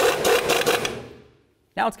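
Air impact gun with a socket on an extension running down a lower ball joint nut with a fast rattle. It stops about a second in and fades out by a second and a half.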